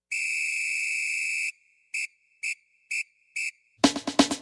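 A whistle at one steady high pitch: one long blast of about a second and a half, then four short blasts about half a second apart.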